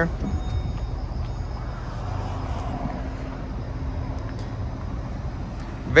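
Power liftgate of a 2014 Lincoln MKT closing under its motor: a faint steady hum for a few seconds over a low steady rumble.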